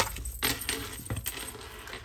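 Oracle cards being drawn from a deck and laid on a table: a few light clicks of card edges and fingernails, with a soft sliding rustle of card on card.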